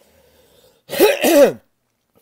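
A man clearing his throat: two loud, quick rasping bursts, each falling in pitch, about a second in.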